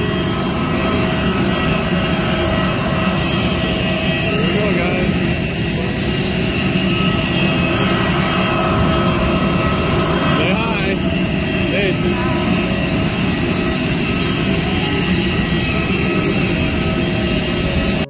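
Loud, steady whine and roar of a parked jet airliner on the apron, unchanging throughout, with faint voices underneath.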